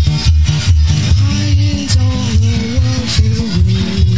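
Background music with a steady bass beat of about two pulses a second, joined about a second in by a melody line that slides between notes.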